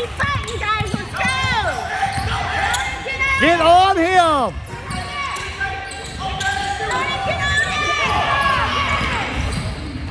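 A basketball being dribbled and bounced on a hardwood gym floor, with rising-and-falling squeals during play; the loudest squeal comes about four seconds in.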